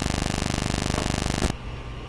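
A steady, rapidly pulsing buzz that cuts off suddenly about one and a half seconds in, leaving a low room hum.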